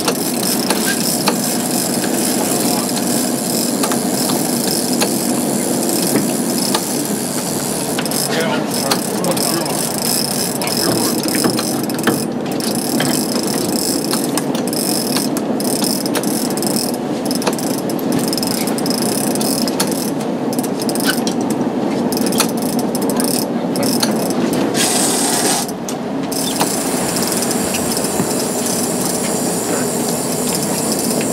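Large big-game trolling reel being cranked against a fish, its gears and ratchet clicking, over the steady running noise of the boat and the sea.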